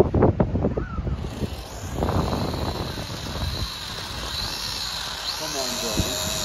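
Small toy quadcopter's motors and propellers running on the grass without lifting off. They make a thin high whine over a whirring hiss, and the whine wavers up and down in pitch in the second half.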